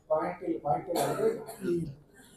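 A man's voice at a microphone: short, halting speech sounds with brief breaks between them.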